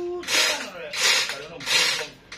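Rhythmic rasping strokes, about three every two seconds, each with a short, faint squeak.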